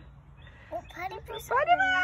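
A high-pitched playful voice. After a quiet first half-second come a few short sounds, then a drawn-out call near the end that slides up in pitch and holds.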